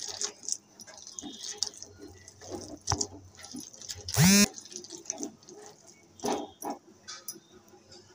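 Hand squishing and kneading a spiced paste mixture in a steel bowl, with soft intermittent scrapes against the bowl. About four seconds in, one loud, short cry with a bending pitch cuts over it.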